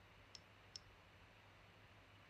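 Two faint, sharp clicks about half a second apart, from the iPhone X being handled, over near silence.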